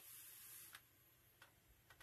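Near silence: room tone with a faint hiss in the first part, and a soft click midway and another near the end.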